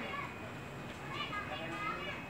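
Faint, distant voices of people talking in the background, heard briefly about a second in and again near the end over steady outdoor background noise.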